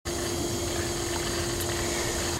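Swimming pool circulation running: a steady rush of moving water and pump noise with one constant hum over it.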